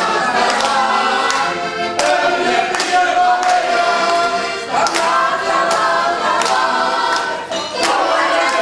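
A crowd singing together and clapping in time, with an accordion playing along. The claps fall at a steady beat, roughly one every second or a little faster.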